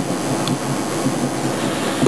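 Steady background noise of a room recording: an even hiss with a low hum underneath, no speech.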